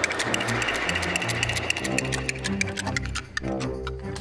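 Scene-change music: low sustained notes under a fast, even ticking rhythm.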